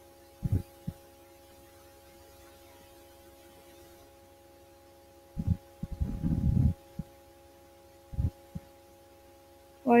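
Steady electrical hum, with short low thumps: two about half a second in, a longer cluster of rumbling knocks from about five to seven seconds, and two more near eight seconds.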